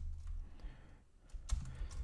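Keystrokes on a computer keyboard: a few scattered taps, the clearest about one and a half seconds in, over a low steady hum.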